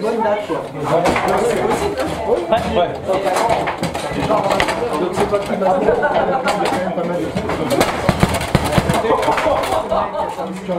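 Table football in play: the ball struck by the figures and the rods knocking, with a quick flurry of sharp clacks about eight seconds in, over people talking in the room.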